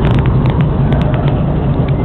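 Passing train: a steady, loud rumble with scattered sharp clicks.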